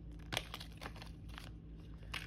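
A small clear plastic parts bag crinkling as it is handled and opened by hand, in a few short rustles, the sharpest about a third of a second in.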